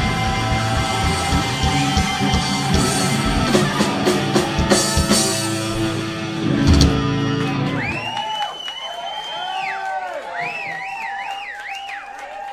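Live rock band, with electric guitars, bass and drums, playing the song's closing bars with crashing cymbals and ending on a final loud hit about seven seconds in. After that, the band drops out and high held and wavering tones ring on more quietly.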